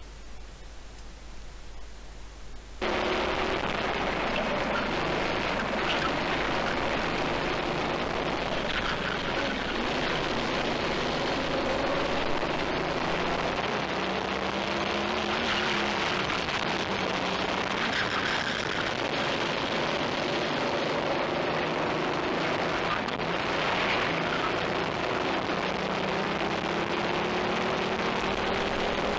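About three seconds of faint low hum where the onboard audio drops out, then a racing kart's engine running hard, its pitch rising and falling as it accelerates and slows, under a constant rush of wind noise on the onboard camera.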